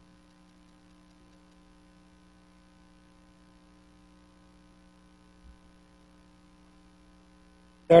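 Steady electrical mains hum: a low, even buzz made of several steady tones, with a faint low bump about five and a half seconds in.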